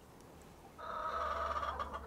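A bird calling once, a single drawn-out call of about a second, starting a little before the middle.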